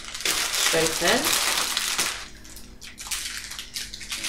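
Plastic bag crinkling as a handful of fresh coriander is shaken out of it into a food processor bowl, loud for about two seconds and then dying down to faint rustling.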